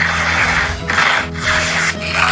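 Plastic packing tape being ripped off a cardboard box in three long tearing pulls, peeling away the box's paper surface with it. Background music runs underneath.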